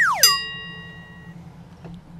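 Cartoon sound effect: a high whistle-like tone sliding quickly down in pitch, then a bright bell ding that rings out and fades over about a second.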